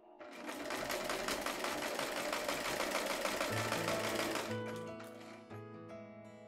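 Electric household sewing machine running at a steady fast stitch, starting just after the beginning and stopping about four and a half seconds in. Soft background music continues underneath and after it stops.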